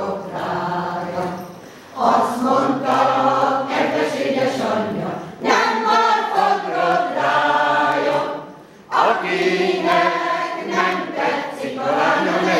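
Women's choir singing together unaccompanied, in phrases broken by short breath pauses about two, five and nine seconds in.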